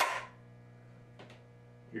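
Lock of a home-built double-barrel flintlock shotgun snapping with no charge in the pan: the flint strikes the frizzen in one sharp snap that rings briefly, making sparks but not firing. A much fainter click follows about a second later.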